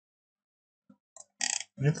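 Quiet for about the first second, then short breath and mouth noises from a man just before he starts speaking.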